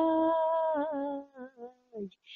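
A woman singing a line of Hindi verse to a melody, holding one long wavering note at the end of the line, which tails off into softer fragments after about a second.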